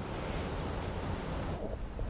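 Room tone in a pause between words: a steady low rumble and hiss with no distinct event, dropping away briefly near the end.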